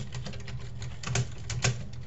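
Computer keyboard keys clicking as someone types, in irregular quick keystrokes, over a steady low hum.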